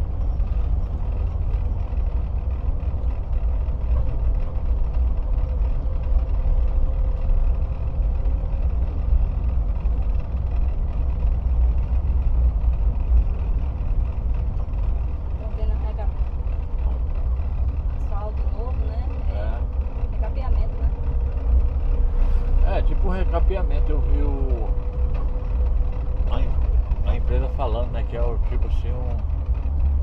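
Car driving along a paved road, heard from inside the cabin: a steady low rumble of engine and tyres, with faint voices in the second half.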